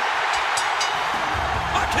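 Arena crowd noise right after a pinfall, with music and a heavy low beat starting about two-thirds of the way through. A commentator's voice comes in at the very end.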